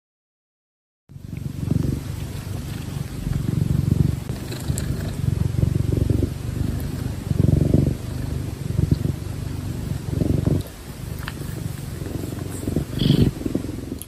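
A domestic cat purring close to the microphone: a low, continuous rumble that starts about a second in and swells and eases every few seconds with its breathing.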